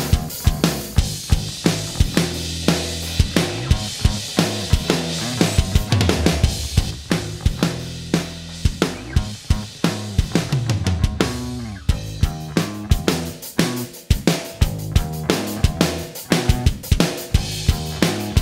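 Rock mix playback of a drum kit and bass guitar sharing a compressed bus: steady kick, snare and cymbal hits over a bass line. It is first heard without the parallel SansAmp saturation, then, after a short break partway through, as the unprocessed original.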